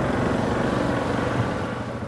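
Four-wheeler (ATV) engine running steadily while it is ridden, a low pulsing drone.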